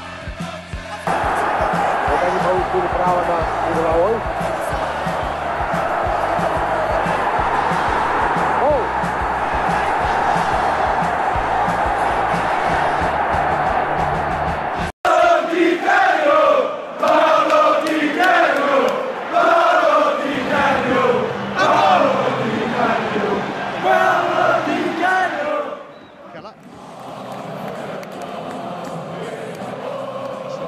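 Football crowd singing and chanting, with a music track and its bass line underneath for the first half. After a short break about halfway, the massed voices come through clearly. They drop to a quieter crowd murmur a few seconds before the end.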